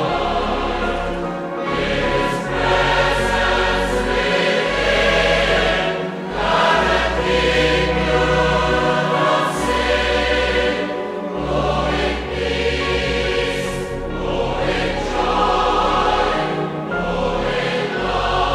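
A choir singing a hymn with instrumental accompaniment, in long held chords over a steady bass.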